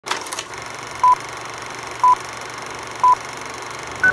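Three short electronic beeps at one pitch, evenly one second apart, over a steady hiss, with a few quick clicks at the start.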